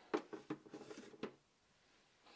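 Faint handling noise: a few light clicks and rustles in about the first second and a half.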